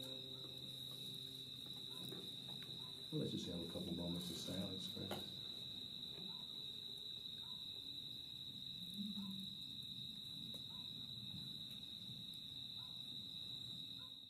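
Crickets trilling steadily at one high pitch, faint. About three to five seconds in, a few soft voices murmur briefly.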